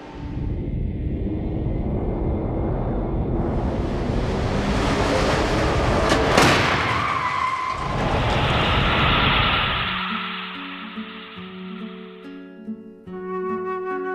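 Small overlap crash test of a 2013 Volvo XC60: a loud rushing noise as the SUV runs down the track and strikes the barrier, with a sharp crack at the loudest point about six seconds in. The noise dies away and flute music takes over after about ten seconds.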